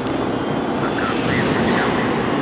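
Steady outdoor city street noise, a continuous rush of traffic and crowd, with faint voices in it.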